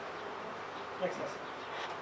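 Steady, low background hiss of room noise, with a man briefly and softly saying "next" about a second in.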